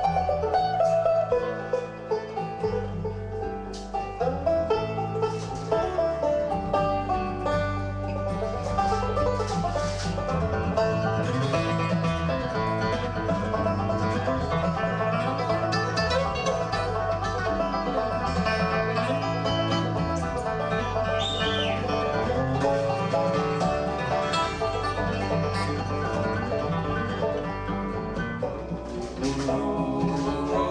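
Live bluegrass trio playing an instrumental passage: five-string banjo, acoustic guitar and bass guitar picking steadily together, with no singing.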